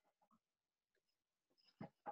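Near silence on a video-call line, with one brief faint click near the end.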